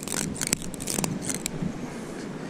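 0.37 mm fluorocarbon fishing line pulled taut and rubbed across barnacle-covered rock in an abrasion test: a scratchy scraping with irregular clicks through the first second and a half, then a fainter steady hiss.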